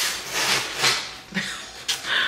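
Packaging rubbing and scraping as a large planter is worked out of its box: a few rasping strokes, then a sharp click near the end.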